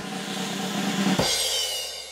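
Short drum-kit sting: a sustained cymbal and snare wash, then a bass-drum and cymbal hit a little past a second in, with the cymbal ringing on and fading.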